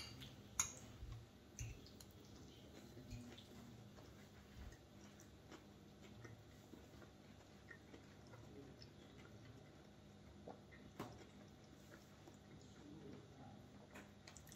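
Near silence with faint chewing of soft raw minced beef (steak tartare), and a few soft clicks of metal forks against ceramic plates.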